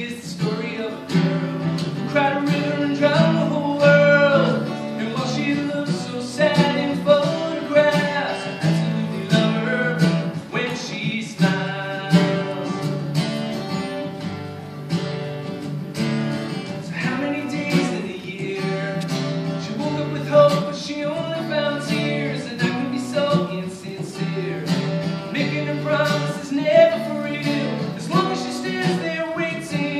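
Acoustic guitar strummed live, playing chords in a steady rhythm.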